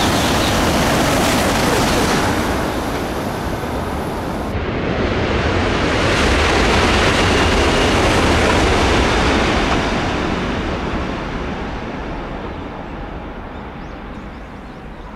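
E956 ALFA-X test Shinkansen passing at high speed: a loud rush of air and wheels. About four and a half seconds in the sound cuts abruptly to a second pass, at about 330 km/h, which swells to its loudest in the middle and then fades away steadily.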